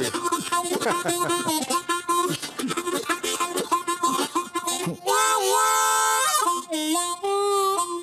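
Solo blues harmonica played with both hands cupped around it: a quick run of notes with bends, then a long held chord about five seconds in, followed by a few sustained single notes.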